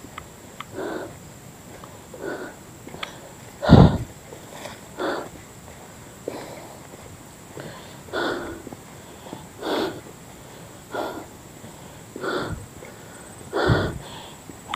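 A hiker breathing hard while climbing a trail, a loud breath roughly every second and a half. One louder, deeper breath or thump comes about four seconds in.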